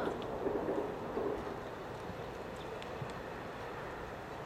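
Steady outdoor background noise with wind on the microphone and a few faint, scattered knocks.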